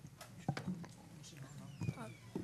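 Faint murmured voices in a hearing room, with a few sharp knocks, the loudest about half a second in and near the end.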